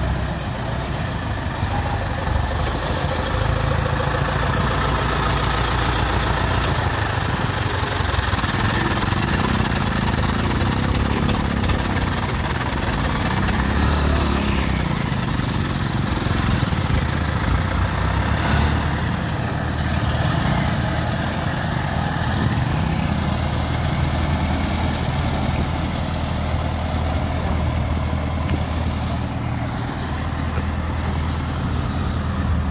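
Diesel engine of an ACE hydra mobile crane running as the crane drives slowly along, the engine note rising and falling partway through. A short hiss comes about two-thirds of the way in.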